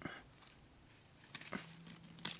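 Faint rustling of tomato leaves and stems, with a few soft clicks, as a sucker at the base of a tomato plant is gripped and cut away.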